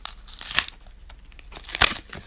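Clear plastic wrapper of a sealed trading-card pack torn open by hand: two short rips, the first about half a second in and a louder one near the end, with faint crinkling between.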